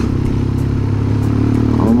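Motorcycle engine running steadily at cruising speed, heard from the rider's seat with road and wind noise.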